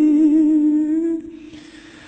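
A Buddhist monk's voice chanting a Khmer tumnuoch (lament), holding one long steady note that dies away just over a second in.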